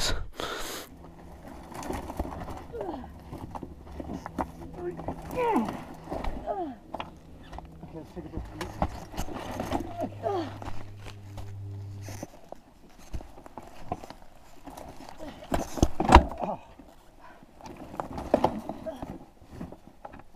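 Scuffing, rustling and scattered knocks as a fallen dirt bike is handled and dragged on a rocky, brushy slope, with a louder thump about four seconds before the end. Faint talk and a low steady hum sit under the first half and stop a little past the middle.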